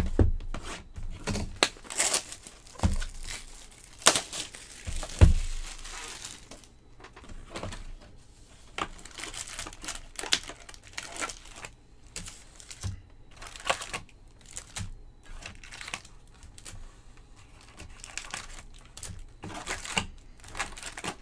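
Trading-card hobby box and its wrapped card packs being handled and opened: crinkling and tearing of the pack wrappers, with several thumps in the first five seconds.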